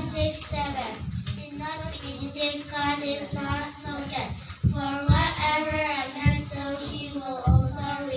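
Young girls' voices in a sing-song chant through handheld microphones, held wavering pitches broken by short pauses, with a few low bumps on the microphones in the second half.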